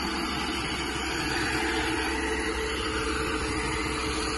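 ProCharger F-1A-supercharged 4.6-litre DOHC V8 of a Mustang SVT Cobra 'Terminator' running steadily at idle, heard close in the open engine bay.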